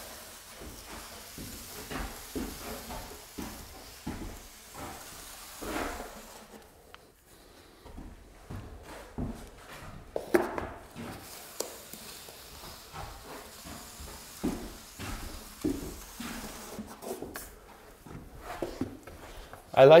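Drywall corner flusher on an extension handle drawn along an inside corner filled with wet joint compound: soft, irregular scraping and squishing of the mud, with occasional light knocks from the tool.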